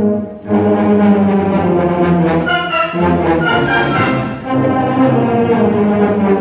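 School concert band playing, brass to the fore: full sustained chords, with a brief drop in loudness just after the start and again a little past four seconds.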